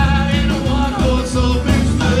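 Live Americana roots band playing: a man sings over slapped upright bass, acoustic and electric guitars and drums.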